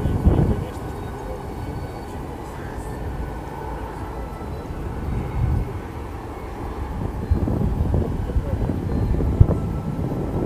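Wind buffeting the microphone: an irregular low rumble that swells in gusts near the start and again in the last few seconds.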